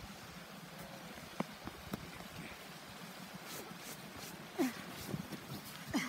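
Footsteps in deep snow: scattered soft crunches and thumps, with the loudest a little past the middle, as people clamber down a snowbank.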